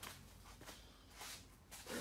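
Faint footsteps and camera handling rustle on a concrete shop floor, a few soft scuffs over a low steady hum.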